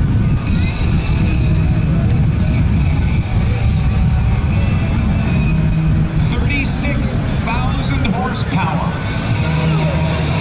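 The Shockwave jet truck's three Pratt & Whitney J34 jet engines run loud and steady with the afterburners lit, pushing the truck down the runway. Faint voices sound over it in the second half.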